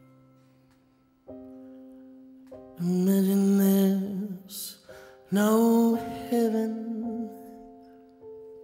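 A man singing a slow ballad to sustained chords on an electric keyboard. A chord is struck about a second in and left ringing, then he sings two long phrases, the first near the middle and the second just after, over the held notes.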